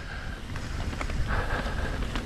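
Wind rumbling on the microphone of a helmet- or chest-mounted action camera while a mountain bike rolls down a dirt singletrack, with tyre noise on the dirt and a few light clicks from the bike.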